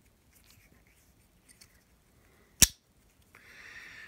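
Slipjoint pocket knife blade snapping shut under its backspring: one sharp, loud click a little over two and a half seconds in, after a few faint ticks of the blade being handled. A soft rustle follows near the end.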